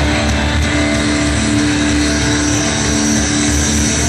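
Metalcore band playing live at full volume: distorted electric guitars hold sustained chords over bass and drums, a dense, loud wall of sound with no vocals.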